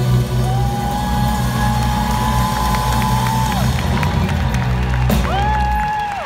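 Live band holding a final sustained chord, with a deep steady bass underneath, that stops just before the end. An audience cheers over it, with two long high held whoops that drop away at their ends.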